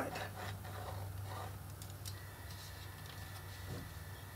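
Faint scratching of a pen tracing a line along the edge of a chipboard piece, with small light ticks, over a steady low hum.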